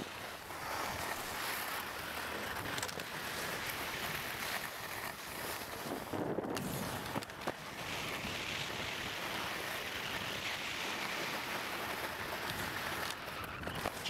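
Skis sliding and scraping over groomed snow, with wind rushing on the microphone, a steady hiss that dips briefly about six seconds in, followed by a couple of sharp clicks.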